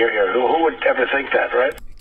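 A man's recorded speech played back from an online video, thin and phone-like because the recording lacks all high treble. It stops near the end with a short mouse click.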